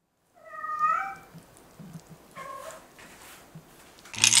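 A cat meowing twice: a longer meow rising slightly in pitch about half a second in, then a shorter, fainter one past the middle.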